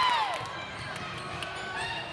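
The tail of a loud spectator shout dies away at the start. Then come basketball bounces on a hardwood gym floor, heard as short sharp thuds over general gym and crowd noise.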